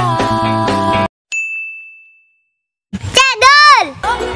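Background music cuts off suddenly and a single bright ding rings out and fades away over about a second. After a short silence a loud, high-pitched voice calls out near the end, its pitch rising and then falling.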